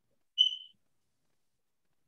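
A single short high-pitched tone, like a beep or small chime, that fades out within about a third of a second; otherwise silence.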